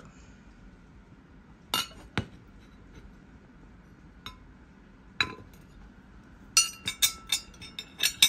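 Ceramic plates and a metal teaspoon clinking as they are handled and set down: two sharp clinks about two seconds in, a couple of faint taps, then a quick run of ringing clinks near the end.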